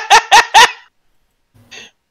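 A person laughing in short, loud, evenly spaced bursts, about four in under a second, dying away about a second in.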